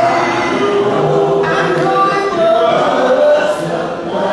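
Church group singing an a cappella gospel hymn in several voices, with male song leaders at microphones. Voices only, no instruments, with notes held in sustained harmony.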